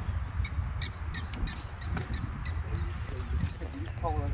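A bird chirping repeatedly in short, high calls, about three a second, over a steady low rumble.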